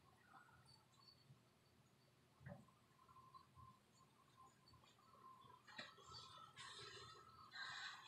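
Near silence: faint room tone with a few soft, brief handling clicks.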